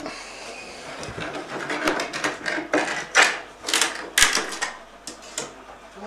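A metal hand tool prying and scraping at a wooden skirting board as it is worked off the wall: irregular knocks and scrapes, the sharpest knock about four seconds in.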